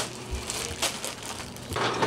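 Irregular rustling and clicks of a handheld camera being carried and moved, with one sharp click at the start, over a low steady hum.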